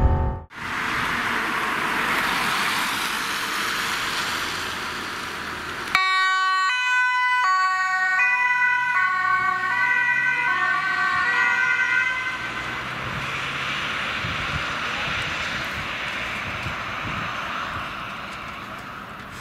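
Rushing road and traffic noise. About six seconds in it cuts to an ambulance's two-tone siren stepping back and forth between a high and a low note. The siren fades into traffic noise again after about twelve seconds.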